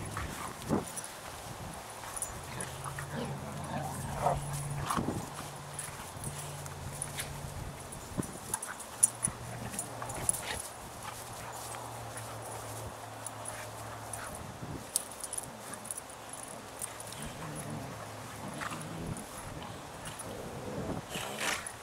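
Two dogs play-fighting on grass: scuffling with sharp clicks and knocks now and then, and a few brief dog noises. A low steady hum comes and goes in the background.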